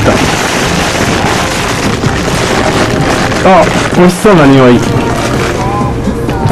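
Plastic snack wrapping crinkling and rustling close to the microphone as a bag of cake is opened and handled. About three and a half seconds in, a couple of brief voice sounds, like a hum or murmur, break in.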